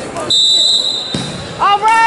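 A referee's whistle blown once: a single steady, shrill blast about a second long, stopping the wrestling, with a thump on the mat as it ends. Loud high-pitched shouting starts near the end.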